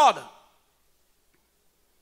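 A man's voice trails off at the end of a word in the first half second, followed by near silence in a pause in the sermon.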